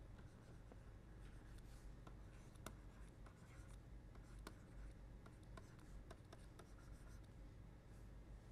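Faint scratching and light tapping of a stylus writing on a tablet, with scattered sharp ticks over a low hum.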